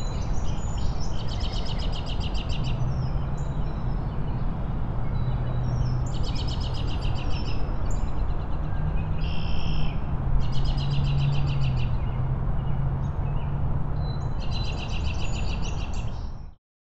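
Outdoor ambience with a bird's rapid trill, repeated four times at intervals of a few seconds, each trill lasting about two seconds, over a steady background hiss and a low hum.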